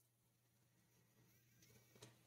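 Near silence: faint room tone.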